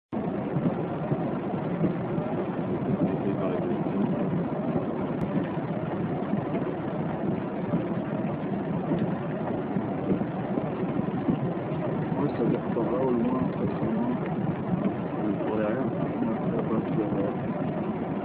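A steady low rumbling noise with faint, indistinct voices in it.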